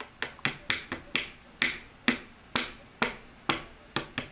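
Long fingernails tapping on tarot cards: a run of sharp clicks, about three a second.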